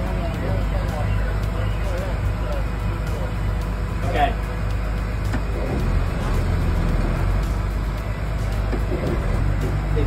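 The trawler's twin diesel engines run at low throttle in gear, port in reverse and starboard forward, for a prop-wash test of a suspected transmission fault. It is a steady low drone heard inside the pilothouse, a little stronger about six seconds in, with faint voices in the background.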